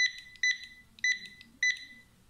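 SUNLUX XL-9309 wireless handheld barcode scanner sounding four short, high-pitched beeps about half a second apart. Each beep is the scanner's good-read signal, confirming a decoded low-contrast EAN-13 barcode on a print contrast test card.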